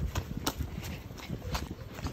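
Footsteps on wet asphalt: shoes tapping and scuffing at a walking pace, with a steady hiss underneath.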